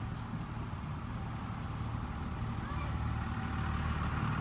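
Low, steady rumble of a motor vehicle engine running, growing louder near the end.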